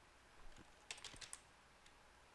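Faint computer keyboard keystrokes: a couple of soft clicks about half a second in, then a short run of several clicks around one second in.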